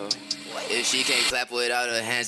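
Rap song's spoken vocal intro, 'Nah you can keep that hoe… What?', over a sparse beat with a few ticks, the vocal growing fuller and louder about three quarters of a second in.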